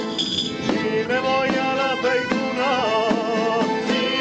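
Live Spanish folk band playing a jota: guitars and a regular percussive beat, with a singer coming in about a second in on long, wavering held notes.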